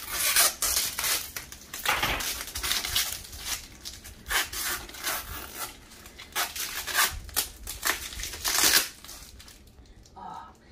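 Plastic crackling and tearing in irregular spurts as the tear-off strip is pulled around the rim of a sealed plastic paint-bucket lid. The crackles thin out near the end.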